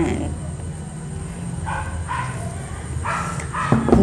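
A dog barking a few short times, over a steady low hum.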